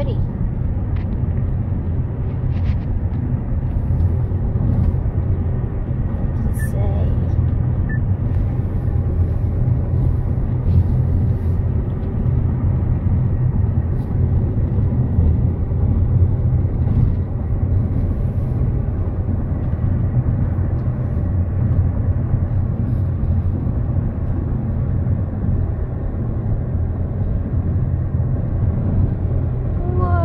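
Steady low road and engine noise of a car cruising at highway speed, heard from inside the cabin.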